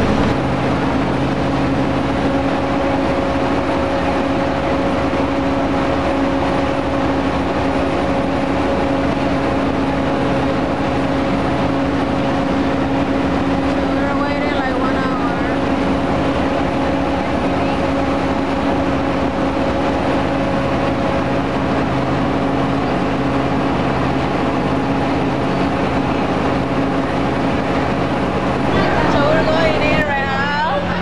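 A large engine running steadily at one speed, a constant low hum over city street noise. Brief voices pass about halfway through and again near the end.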